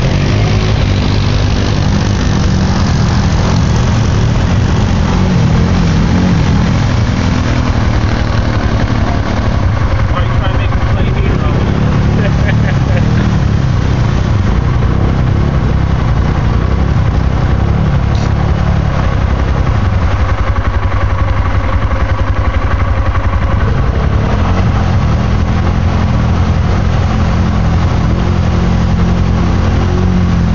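ATV engine running under load, revving up and down, as the four-wheeler churns through deep mud and water.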